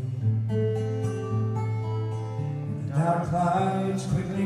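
Live solo acoustic guitar with ringing, held notes, and a man's singing voice coming in about three seconds in.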